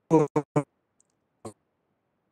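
A man's speech over a video call: a few clipped syllables early on, then dead silence broken only by a tiny click and a brief fragment, as if the audio cuts in and out abruptly.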